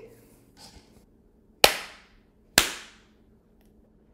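Two sharp hand claps about a second apart, each with a short echo: hands clapped together to swat fruit flies in midair.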